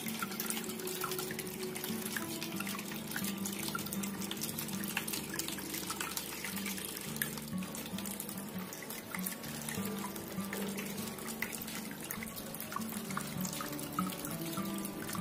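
Thin streams of water pouring from the spouts of a tiered concrete fountain into the bowls below, trickling and splashing steadily. Background music plays along.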